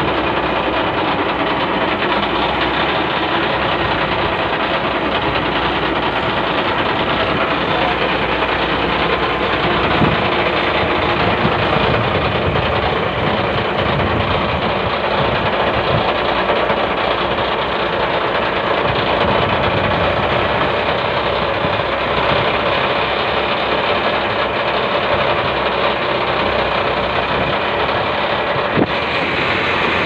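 Fishing boat's inboard engine running steadily at a constant speed, a loud unbroken drone. A single sharp knock comes near the end.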